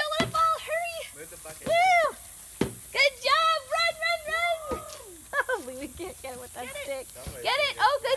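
Young children's high-pitched voices shouting and squealing excitedly over one another during play, with a couple of sharp knocks.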